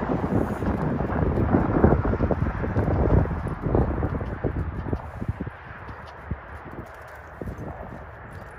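A horse's hoofbeats in loose sand as it moves out at a faster gait, with wind rumbling on the microphone over the first few seconds before it dies down to scattered soft hoof thuds.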